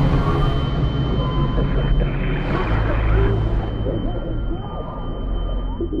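Muffled underwater rumble and churning water as a handheld camera is dragged under the sea surface, with a brief splashier burst about two seconds in. A thin, steady high tone sits over it throughout.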